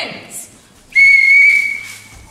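A referee's whistle blown once: a single steady high note that starts about a second in, holds for about a second and then fades.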